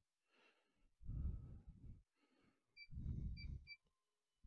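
Two heavy breaths close to the microphone, each lasting about a second. Three short, high electronic beeps come during the second breath.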